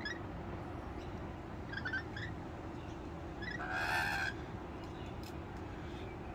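Rainbow lorikeets calling: a few faint short high chirps about two seconds in, then one short harsh squawk about four seconds in, over a low steady background noise.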